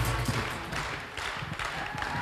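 Electronic dance music fades out in the first half second, leaving a theatre audience's scattered clapping and hall noise.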